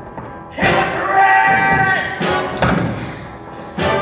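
Theatre orchestra playing dramatic music punctuated by heavy accented hits. There are about four sharp strikes, with a loud held chord after the first.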